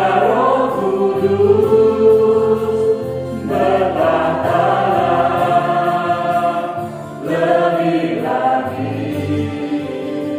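A small mixed vocal group singing an Indonesian Christian worship song in harmony to electronic keyboard accompaniment, in long held phrases, with new phrases starting about three and a half seconds in and again about seven seconds in.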